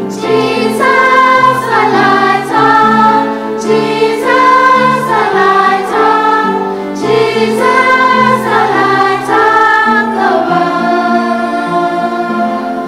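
A choir singing a hymn in slow, held notes, the melody moving in steps over steady low notes.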